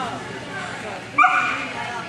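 A dog gives a single short, sharp bark about a second in, over people talking in the background.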